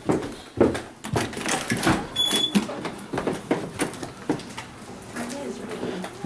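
Footsteps and handling knocks of people going out through a building's glass-panelled front door, with the door clunking and indistinct voices.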